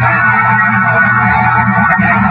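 Loud, steady droning hum with a dense hiss above it, from a heavily filtered and amplified recording; it sounds distorted and does not change in rhythm or pitch.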